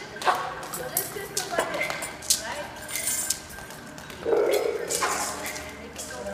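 Scattered sharp clicks, taps and clinks from small hand percussion instruments being handled and tried out, spread irregularly, with background chatter.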